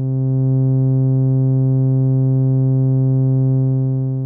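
A single held sawtooth note from a Moog Mother-32 oscillator, run through a Rossum Evolution transistor-ladder low-pass filter with its resonance turned down: a steady low note with its upper harmonics cut off. It grows a little louder over the first half second and eases off slightly near the end.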